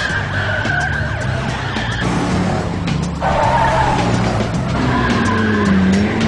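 Car tyres squealing as the car is driven hard, over the engine: a long squeal for the first two seconds and another starting about three seconds in.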